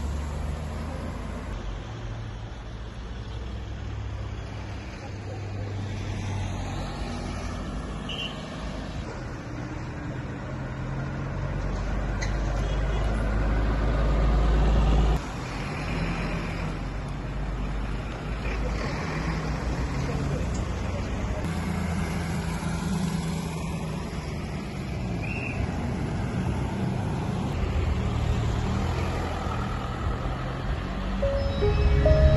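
Road traffic on a highway: cars passing with a steady low engine and tyre rumble. The rumble swells about twelve seconds in and cuts off suddenly a few seconds later.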